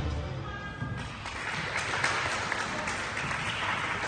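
Dance music fading out within the first second, then applause from spectators runs steadily through the rest.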